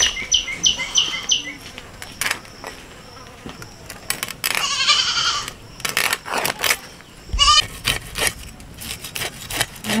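Scales being scraped off a silver pomfret (rupchanda) against the iron blade of a boti: a run of short, rasping scrapes. An animal calls twice in the background, around the middle and again a couple of seconds later.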